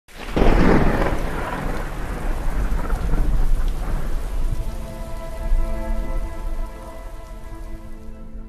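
A sudden loud rumble with a noisy hiss, dying away slowly over several seconds, while a drone of steady held musical notes fades in about halfway.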